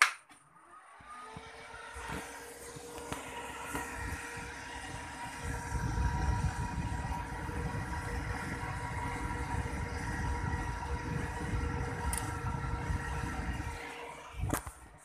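A sharp click as the home-built 5.1 MOSFET amplifier is switched on, then a steady hum with a low rumble that builds over the next few seconds and holds.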